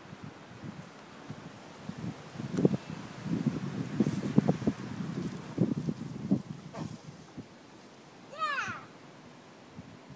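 Irregular scuffs and knocks of children climbing over a tree trunk and branches, loudest in the middle. Near the end comes one short high call that falls steeply in pitch.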